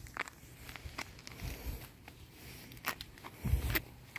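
Faint footsteps with a few scattered light clicks, and a low thump about three and a half seconds in.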